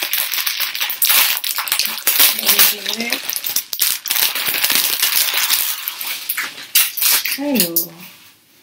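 Clear plastic packaging crinkling and crackling as a pair of socks is pulled out of it, a dense run of crackles that stops about seven seconds in.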